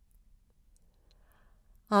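Near silence in a pause of a woman's audiobook narration, with a few faint mouth clicks and a soft breath; her voice resumes right at the end.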